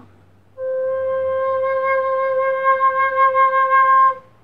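Soprano recorder sounding one long, steady low C (C5, the lowest note of the instrument, all holes covered), blown gently. It starts about half a second in and holds evenly to the end.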